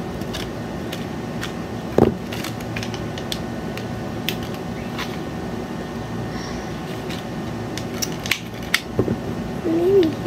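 Small objects and packaging being handled at a desk: scattered light clicks and taps over a steady room hum, with a louder thump about two seconds in and a run of clicks near the end.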